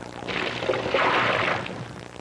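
A rush of water in a cartoon soundtrack, swelling to a peak about a second in and then fading, like a wave splashing or water pouring.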